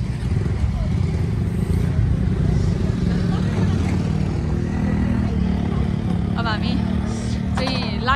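Motorcycle engine idling: a steady low hum that holds even throughout.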